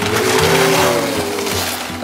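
Gift wrapping paper being torn and rustled off a box, with background music playing underneath.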